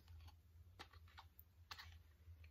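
Near silence with a few faint, short clicks and rustles of small items being handled in the lap, over a low steady hum.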